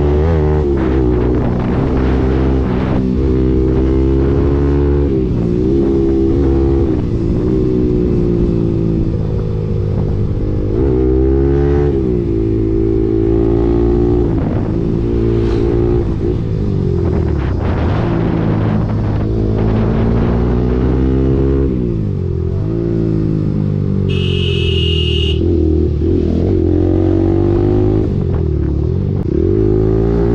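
Bajaj Pulsar 200NS single-cylinder engine running through an aftermarket Akrapovic exhaust while riding, its revs rising and falling repeatedly with the throttle. A short high beep sounds about 24 seconds in.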